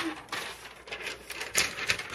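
Handling noises at a heat press after a sublimation press is finished: uneven rustling with short clatters and two sharp clicks near the end.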